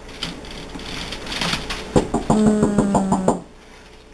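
Puppies scuffling on newspaper, with paper rustling. About two seconds in, a puppy gives a pulsing growl, steady in pitch, that lasts about a second.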